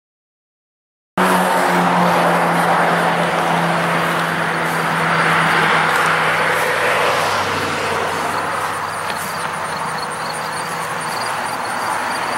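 A motor vehicle engine running steadily. It cuts in abruptly about a second in, with a steady low hum that fades gradually. Faint, fast, high ticking joins near the end.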